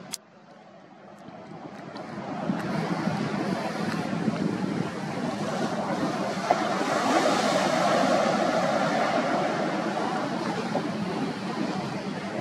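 Surf breaking and wind buffeting the microphone, a steady rushing noise that builds over the first few seconds. A single click comes right at the start.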